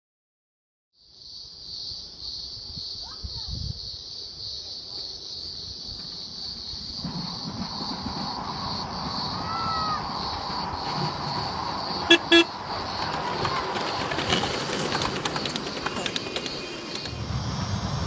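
A ride-on miniature train gives two short horn toots about twelve seconds in. The train runs louder from about seven seconds in as it approaches, and a steady high buzz carries on underneath throughout.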